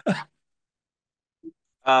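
A man's voice: a brief vocal sound falling in pitch at the very start, then a pause of near silence, then he starts speaking just before the end.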